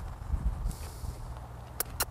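A horse's hooves and a handler's steps shuffling as the mare is turned around, over a low rumble, with two sharp clicks near the end.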